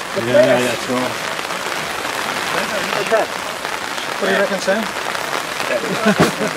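Scattered voices of players calling out on a football pitch, in short bursts about half a second in, around three seconds and around four and a half seconds, over a steady background hiss.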